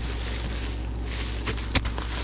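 Light rustling and a few short clicks, about one and a half seconds in, as a bubble-wrapped doll is handled in a plastic bin on wire shelving, over a steady background hum.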